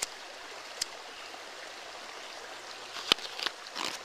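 A stream running steadily, with a few sharp clicks over it: one at the start, one just under a second in, and the loudest about three seconds in, followed by a few smaller ones.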